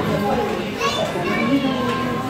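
Several young children's voices chattering and calling over one another as they play, with a higher call about a second in.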